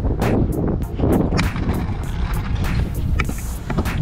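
Pro scooter's wheels rolling over rough, cracked concrete: a steady low rumble. Background music with a regular beat runs over it.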